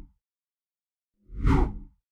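Edited-in whoosh transition sound effect with a deep low thump: the tail of one fades out at the start, and an identical one swells and dies away about a second and a half in, marking the cut from the title card to the presenter.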